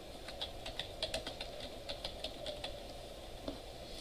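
Computer keyboard typing: a quick, faint run of key clicks that thins out about three seconds in.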